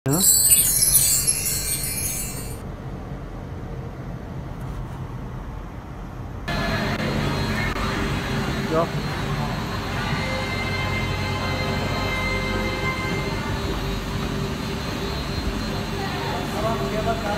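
A bright shimmering chime for the first two and a half seconds. After a quieter stretch, from about six and a half seconds the steady hum and whine of cable car station machinery, with several held tones.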